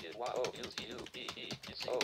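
Computer keyboard typing: a run of quick key clicks.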